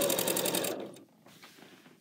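Janome 4120 QDC sewing machine stitching quilt binding with a fast, even stitch rhythm, about ten stitches a second. It winds down and stops under a second in, leaving near silence.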